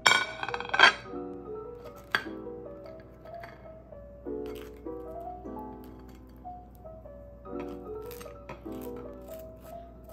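Soft piano background music throughout, with a ceramic plate clinking several times as it is set down on a tiled counter in the first second and a sharp click about two seconds in. Later come faint strokes of a fork scraping mashed avocado across toast.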